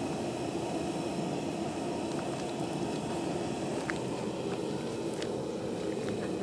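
Pressurised LPG stove burner under a large cooking pot, running with a steady, unbroken rushing noise.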